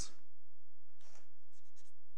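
Faint scratching and rustling of paper about a second in and again near the end, over a steady low electrical hum in a quiet room.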